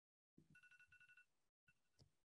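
Near silence, with a faint electronic ringing tone pulsing rapidly for under a second, like a telephone ringing in the background.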